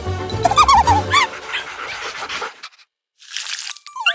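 Cartoon soundtrack: music with a bass beat and warbling, squeaky cartoon sounds, the beat stopping about a second in. It fades out to a moment of silence, then a short hiss sounds near the end.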